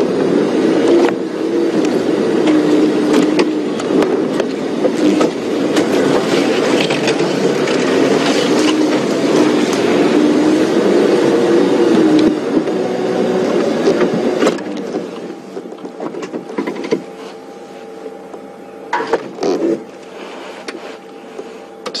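Game-drive vehicle engine working under load as it drives off-road through the bush, its pitch rising and falling. About 15 s in it drops to a quieter, steady idle as the vehicle stops.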